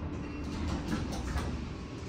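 Otis elevator car doors sliding open at a floor stop, with a low rumble and light mechanical ticking from the door operator.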